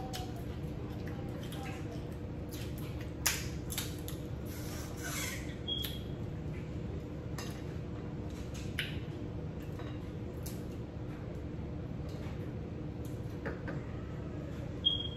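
Crab being eaten by hand: shells cracking and clicking as legs are snapped and picked apart, in scattered short cracks with a sharp one about three seconds in. A steady low hum runs underneath.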